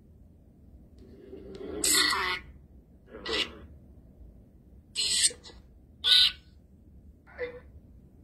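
Five short, breathy bursts of a person's voice, spaced about a second apart, with quiet between them.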